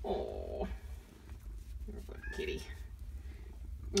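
Domestic cat purring steadily while being petted, with two short vocal sounds over it: one held for about half a second at the start, and a rising one about two seconds in.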